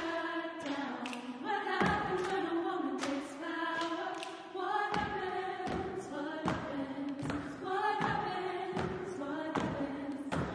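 Women's a cappella vocal ensemble singing in harmony, with a steady beat of body-percussion hits, a little more than one a second.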